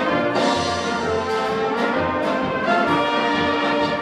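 Czech-style brass band (dechovka) playing a tune: standing trumpets carry the melody over tenor horns and clarinets, with the tuba sounding a steady beat of bass notes.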